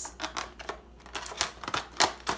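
Scissors cutting through a clear plastic blister package: a run of irregular crisp snips and crackles as the blades work through the plastic.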